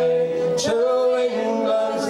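Live folk singing: a man's voice holding long, drawn-out notes that slide from one pitch to the next.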